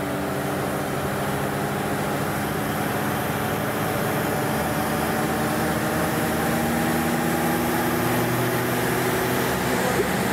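Lada car engine running under throttle in third gear, spinning a jacked-up rear wheel with a studded tyre: a steady engine drone with wheel and driveline noise that grows gradually louder as the revs are brought up.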